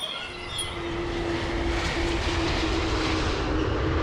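A jet airliner passing low overhead: a steady rushing engine noise that grows louder, with a faint steady hum beneath it.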